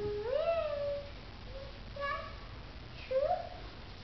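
A toddler's wordless high-pitched vocalizing: four short calls that each rise in pitch and then level off, the first and longest lasting about a second.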